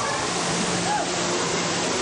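A steady rushing noise, even and unchanging, with faint voices in the background and a low hum underneath.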